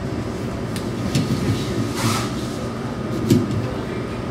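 Steady low room rumble, with a handful of scattered clicks and knocks as the microphone on its stand is handled.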